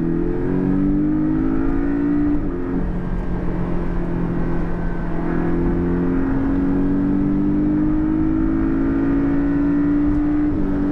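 Porsche 718 Cayman's turbocharged four-cylinder engine accelerating, heard from inside the cabin. Its pitch climbs steadily through each gear and drops at upshifts about two and a half seconds and six seconds in.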